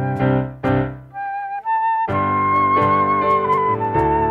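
Church worship band playing an instrumental passage of a worship song: the keyboard chords drop away about a second in, leaving a thin high melody line, and the full band comes back in about two seconds in under a long held high melody note.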